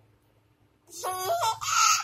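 A toddler girl's high-pitched voice, starting about a second in: a short run of stepped notes that rises into a held squeal as she laughs.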